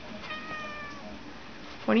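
Kitten meowing once: a single high, thin meow whose pitch falls slightly, lasting under a second.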